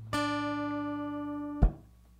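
Acoustic guitar's final chord of a song, struck once and left ringing, slowly fading. It is cut off by a short muting knock about a second and a half in.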